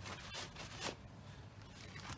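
Faint scuffing of a shop rag wiping brake fluid off an old brake caliper: a few soft rubs and handling sounds in the first second, then quieter.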